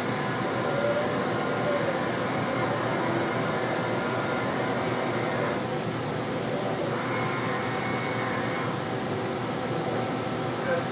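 Steady machine hum, with a few faint steady tones over an even whir.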